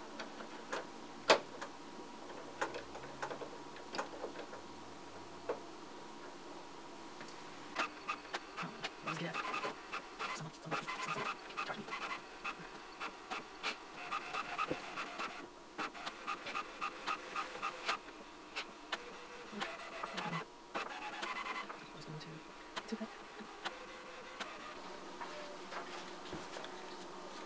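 New HP inkjet printer being set up: a sharp click about a second in as an ink cartridge is pushed into the carriage, a few lighter clicks, then the printer's motors and carriage run with a buzzing whir and rapid clicking for about fifteen seconds as it initializes with the newly installed cartridges.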